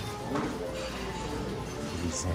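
Music playing, with people's voices talking in a busy dining room.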